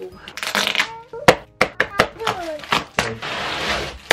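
Unboxing a plastic stackable storage bin: cardboard scraping as the box is opened, then a run of sharp knocks and clicks as the hard plastic bin is handled against the box, and plastic wrap crinkling near the end as it is peeled off.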